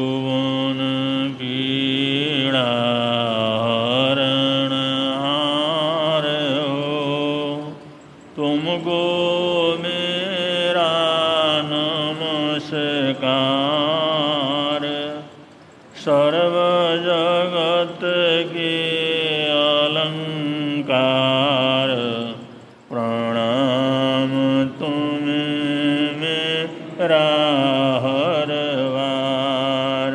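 A Jain monk's solo male voice chanting a devotional invocation in long, melodic sung phrases. There are four phrases of about seven seconds each, with short breaks for breath between them.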